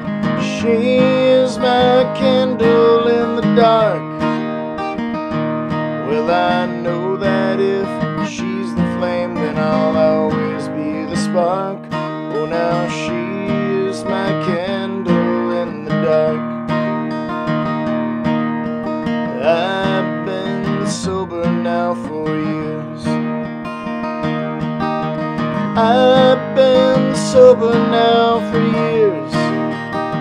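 Acoustic guitar strummed in a slow folk song, with a voice singing a melody over it without clear words.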